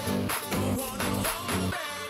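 Background electronic dance music with a pulsing beat, thinning out near the end.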